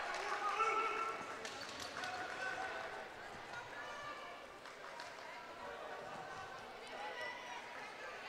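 Scattered voices of the crowd and players in a gym, fading over the first few seconds as the cheering for a point dies down, with a few faint clicks and knocks.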